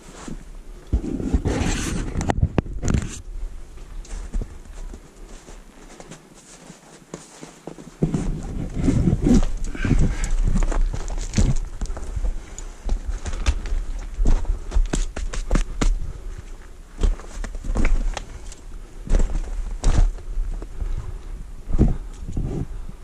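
Irregular footsteps on loose rock and scree, stones crunching and knocking underfoot close to the camera. From about eight seconds in the steps get louder and more frequent, over a low rumble.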